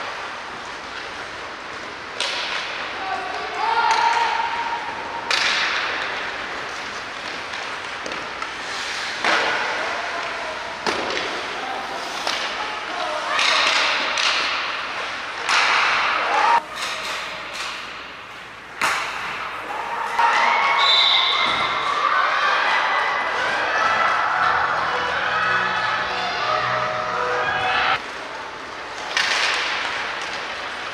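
Live rink sound of a youth ice hockey game: repeated sharp knocks of sticks and puck, with shouting voices that grow into sustained shouting and cheering in the second half as a goal is scored.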